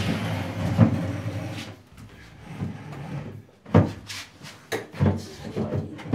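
Several sharp wooden knocks and bumps as a bathroom vanity cabinet is lifted and set down into place, with a cluster of knocks in the second half.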